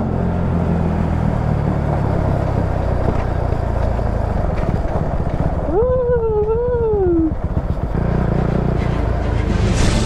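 Husqvarna 401's single-cylinder engine running steadily at low town speed, with wind rushing past the microphone. About six seconds in, a wavering pitched sound rises and falls for about a second and a half.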